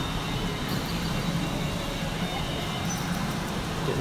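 Steady din of a pachinko parlour: the noise of many machines blending into one constant wash of sound, with a few faint electronic tones over it.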